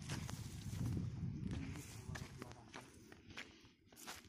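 Footsteps on soil and rustling of ginger leaves as hands move through the plants, with scattered small clicks and crackles. It is louder in the first two seconds and fades after that.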